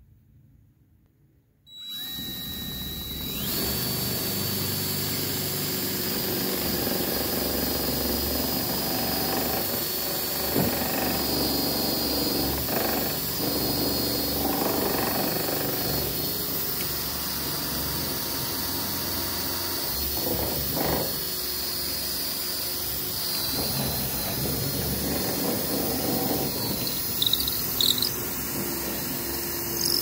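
DeWalt 20V cordless drill boring a long drill bit through pressure-treated lumber. It starts about two seconds in and then runs steadily with a high motor whine, with a few brief louder moments as the bit works through the wood.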